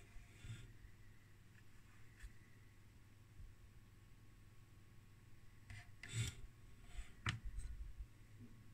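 Faint room tone with a low steady hum, broken near the end by a few brief rubbing and knocking handling sounds.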